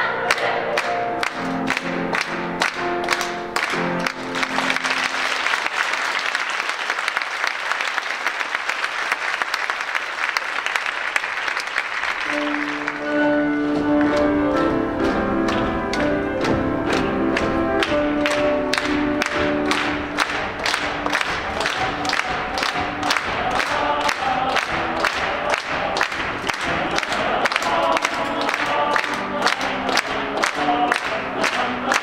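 A girls' choir with piano ends a song over steady rhythmic clapping. Applause follows from about four to twelve seconds in, and then piano music starts up again over the same steady clapping, about two to three claps a second.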